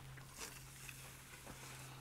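Quiet handling of a truck-mounted roll-out awning: a few faint clicks and rustles as the fabric is pulled out and its support pole is set, over a steady low hum.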